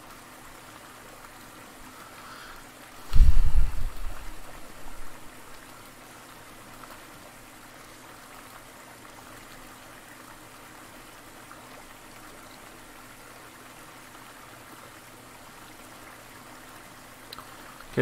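Quiet, steady rushing and trickling of a rocky mountain stream. About three seconds in, a loud low thump that dies away over a second or two.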